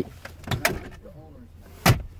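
A couple of light clicks about half a second in, then a single sharp knock near the end, from handling inside a car's interior.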